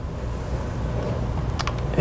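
A steady low rumble with a faint hiss, and a couple of light clicks about one and a half seconds in, likely from the plastic brick model being handled.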